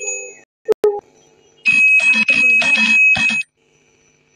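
Electronic bell-like chime sound effects from a live-streaming app's gift animation. A couple of short clicks and tones come about a second in, then a louder jingle lasts nearly two seconds and cuts off abruptly.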